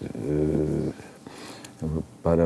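A person's voice holding one drawn-out hesitation sound for about a second, then a short spoken syllable near the end: conversational speech only.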